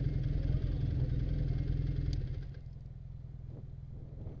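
Snowmobile engines idling steadily. About two and a half seconds in the sound drops as one engine is switched off, and a quieter idle carries on.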